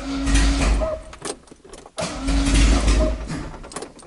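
Volkswagen Gol's starter cranking the engine in two bursts of about a second each, the engine not catching. It is a hard start on a cold morning.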